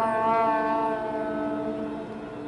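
Marching band brass holding a sustained closing chord that slowly fades away. The upper notes drop out about a second in while the lower notes carry on.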